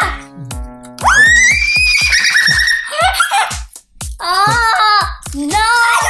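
Instrumental background music with a steady beat, over which a young child lets out a long, high-pitched excited squeal starting about a second in, followed by more excited child vocalising in the second half.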